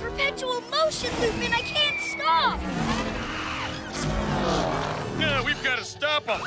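Cartoon sound effects of a rocket-powered scooter zooming and skidding out of control, with gliding whooshes and a long falling whistle about two seconds in. Wordless yelps and background music run alongside.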